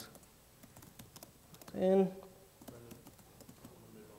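Laptop keyboard typing: scattered, irregular keystrokes clicking throughout.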